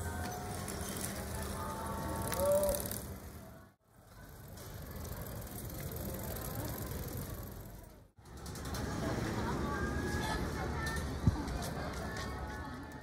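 Outdoor street and school-gate ambience of students arriving: voices calling and chatting, bicycles passing. It comes as three short stretches, each fading in and out, with a single sharp click near the end.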